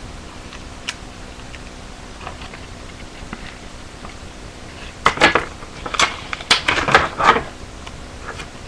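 A paper model being handled and worked by hand: a faint click about a second in, then a run of five or six short, loud crinkling and tearing bursts starting about five seconds in.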